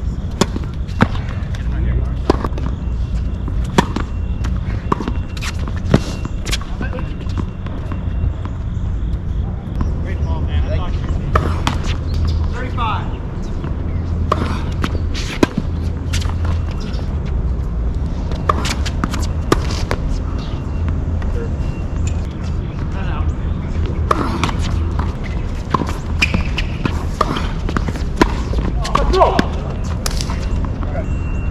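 Tennis balls struck by rackets during rallies: sharp pops about one to one and a half seconds apart, with scattered further hits through the rest of the points, over a steady low rumble.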